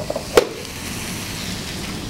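Spinach and chopped onion sizzling steadily as they sauté in butter and olive oil in a pan, with one sharp knock about half a second in.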